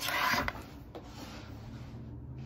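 A brief scraping rustle in the first half second, from movement rubbing close to the microphone as the person twists round and reaches behind, then a faint steady low hum.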